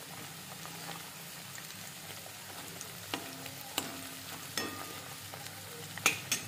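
Oil sizzling steadily in a metal kadhai as bay leaves and spices fry, stirred with a steel spoon that clinks against the pan a few times in the second half.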